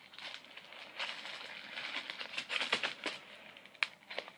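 Plastic packaging crinkling and rustling as it is handled, with scattered clicks and a sharp click near the end.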